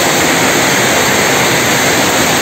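Heavy rain pouring down in a steady, dense rush of rainfall.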